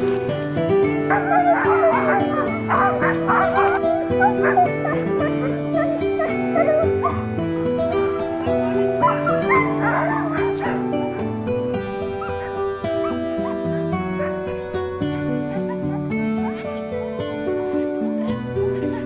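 Harnessed Siberian husky sled dogs yipping and whining in two bouts, one starting about a second in and another around nine seconds in, over background music.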